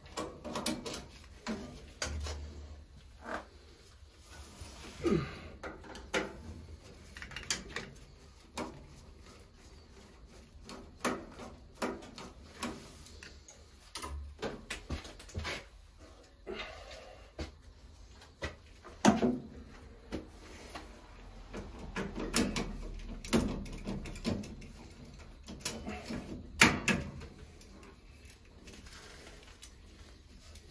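Irregular clicks, taps and rustles of gloved hands working on a Honeywell zone valve head as it is taken off the valve body, the loudest knocks about two-thirds of the way in and near the end.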